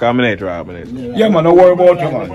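A man's voice, talking loudly with drawn-out, sing-song tones.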